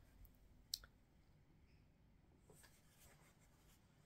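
Near silence: room tone, with one faint sharp click under a second in and a few fainter ticks later on.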